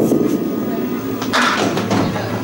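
A candlepin bowling ball rolling down a wooden lane with a steady rumble, then a brighter clatter about a second and a half in as it strikes the pins.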